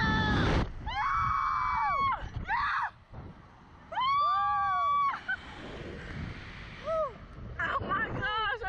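Two riders on a SlingShot reverse-bungee ride screaming and whooping. There are two long, held screams, about a second in and about four seconds in, with shorter cries between. Wind rushes on the microphone throughout.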